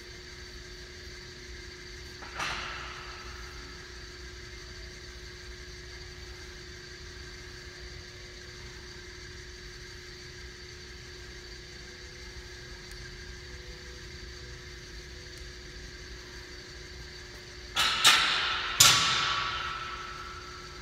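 Steady hum of a gym hall's air handling with a low tone running through it. One sharp knock comes about two seconds in, and two louder knocks follow close together near the end.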